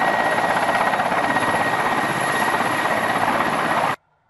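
Mil Mi-17 helicopter flying just above the ground: steady, loud rotor and turbine noise with a thin, constant high whine.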